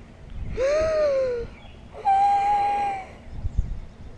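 Two drawn-out wordless vocal cries: the first rises and falls in pitch, the second is held steady at a higher pitch for about a second. A low thump follows near the end.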